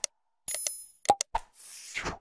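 Subscribe-reminder animation sound effects: a mouse click, a short ringing chime, two quick pop-like clicks, then a brief whoosh near the end.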